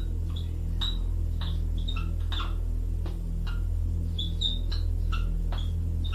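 Steady low electrical hum with about a dozen irregular light clicks and brief high squeaks over it.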